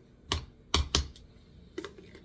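Metal spoon knocking and scraping inside a jar of mayonnaise as it is scooped out: four short, sharp knocks, the two loudest close together about a second in.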